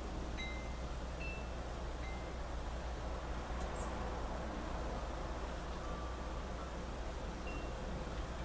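A few brief, scattered high ringing notes, each a single steady pitch, over a steady low hum and background hiss.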